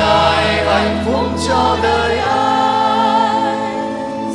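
Church choir singing a Vietnamese hymn, voices moving over held low notes that change about two seconds in.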